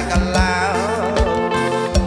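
Khmer orkes band playing live: a male singer with a wavering, ornamented vocal line over keyboard, electric guitar, bass and a drum kit keeping a steady dance beat.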